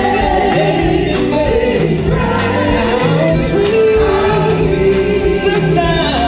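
Gospel choir singing long held notes with a live band of keyboards, bass and drums keeping a steady beat.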